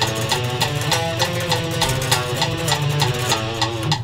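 Electric guitar playing a fast alternate-picked single-note exercise at 200 beats a minute, with an even beat of clicks keeping time; the playing stops at the end.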